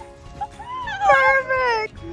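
A girl's high-pitched excited squeal, wavering and falling in pitch and lasting about a second, stopping just before the end.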